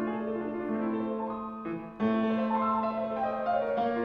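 Grand piano played solo: a flowing run of notes over a held low note. The playing thins out just before two seconds in, then a loud new chord comes in and the passage carries on.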